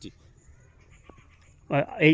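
A pause in a man's speech with only faint background sound and a faint click about a second in; he starts speaking again near the end.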